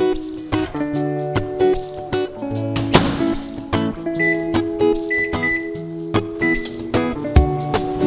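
Background music with plucked guitar. Near the middle come four short, high beeps from a microwave oven's keypad as it is being set.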